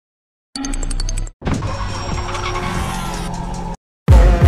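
Opening intro sting: a short electronic musical phrase, a brief break, then about two seconds of a motor vehicle engine sound mixed with music, cut off abruptly.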